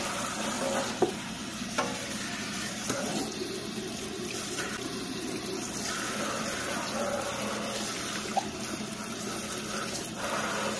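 A steady stream of running water splashing onto a wet rugged laptop's keyboard and case, with a few brief sharp clicks.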